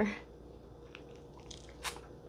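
Quiet sipping of a thick chocolate smoothie through a plastic straw: a few small mouth and lip clicks, with one sharper click just before the end.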